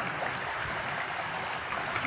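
Shallow river water running steadily over rocks.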